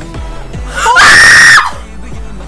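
A young woman screaming in excitement: one loud, high scream that rises in pitch and is held for about half a second before breaking off, over music with a deep bass beat.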